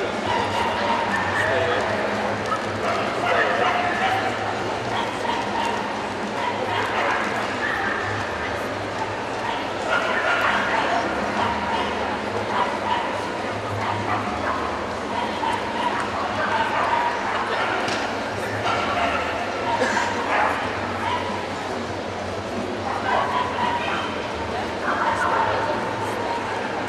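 Dogs barking and yipping here and there over steady crowd chatter, a continuous busy din.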